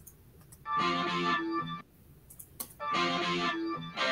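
Rock recording played back from its isolated studio tracks: two sustained chords, each held about a second with a short gap between, in an organ-like tone.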